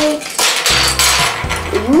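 Small plastic surprise egg being handled and prised open, with a burst of plastic clicking and rustling lasting about a second.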